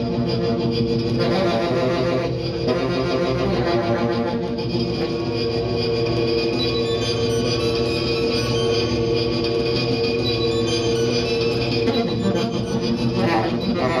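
Saxophone played through electronic effects pedals, making a dense drone of many held, overlapping tones that never breaks.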